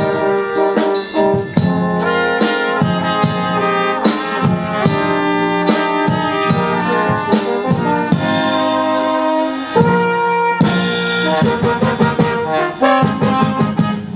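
Brass quintet of trumpets, French horn and tuba playing a pop-ballad medley arrangement in sustained chords, with a drum kit keeping the beat.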